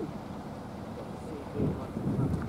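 Wind buffeting the microphone in a steady low rush, with faint voices talking nearby and a brief swell of voice-like sound near the end.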